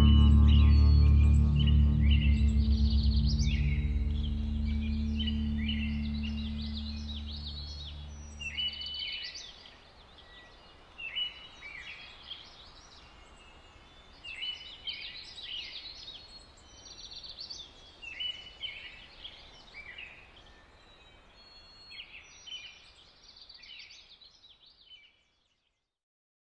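The last held chord of an instrumental band track (bass and electric guitars) fading out over the first nine seconds or so, while birds chirp and sing over it. The birdsong carries on alone in short phrases until it cuts off just before the end.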